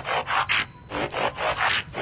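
Breathy, nearly voiceless laughter: two runs of quick wheezing pulses.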